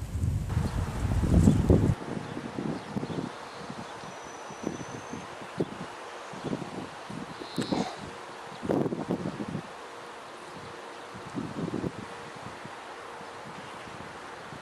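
Wind buffeting the microphone for the first two seconds, then quieter outdoor ambience with irregular light gusts of wind and rustling vegetation. A short high bird call comes about four seconds in and another chirp near the middle.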